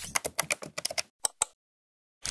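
Computer keyboard typing sound effect: a fast run of key clicks for about a second, two more separate clicks, then it stops.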